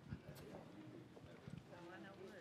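Near-silent room tone in a church sanctuary, with faint voices talking away from any live microphone and a few soft thumps, like footsteps on a stage floor.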